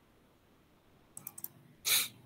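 A few quick computer mouse clicks over quiet room tone, about a second and a quarter in, then a short, louder burst of noise just before the end.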